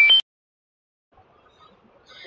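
The last notes of a short electronic beeping tune, single high tones stepping up and down in pitch, cutting off suddenly just after the start; then near silence.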